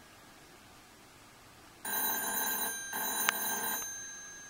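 Crosley CR62 Kettle Classic telephone ringing: one double ring, two bursts of under a second each with a short gap between, starting about two seconds in. A sharp click sounds during the second burst.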